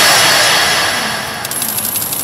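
Medal pusher arcade machine's electronic sound effect: a loud whooshing swell that fades away over the first second and a half, then a quick run of sharp clicks near the end as the special ball is readied to drop.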